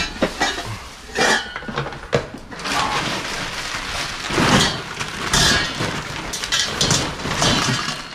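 Stainless steel pot and colander insert clanking and clinking against a ceramic dish in a run of irregular clatters as they are handled and pushed into a plastic garbage bag, with the bag rustling.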